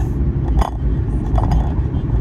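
Car cabin noise while driving: a steady low rumble from the road and engine, with a few brief higher-pitched chirps.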